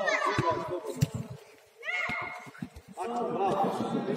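Shouting voices of players and spectators at a youth indoor football match, with a quick run of short thuds in the first second or so from feet on the ball and turf. After a brief lull there is a rising shout, then many voices calling at once near the end.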